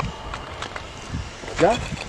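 Low outdoor background with faint voices, and a man's short spoken "ya" near the end.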